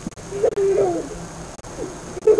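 A person's voice making a short, wavering sound about half a second in, with a briefer, fainter one near the end.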